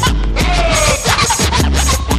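Hip hop track with turntable scratching over a deep 808 bass beat.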